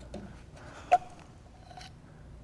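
Quiet handling of plastic labware, with one sharp click about a second in and a few fainter ticks.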